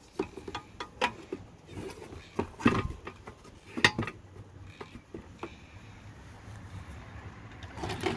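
Irregular clicks and knocks of hard plastic and metal as the gas tank of a Troy-Bilt TB230 lawn mower is fitted back onto its engine by hand, with the two sharpest knocks near the middle. The handling noise dies down in the last couple of seconds.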